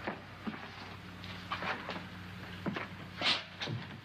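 A few irregular footsteps and light taps, with a louder scuff about three seconds in, as a hand goes to a wall, over the steady low hum of an old film soundtrack.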